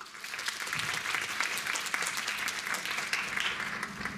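Audience applauding, a dense, steady patter of many hands clapping.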